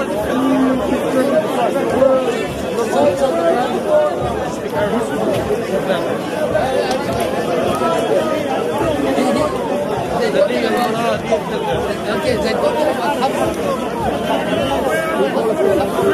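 Several people talking over one another, a continuous jumble of overlapping voices.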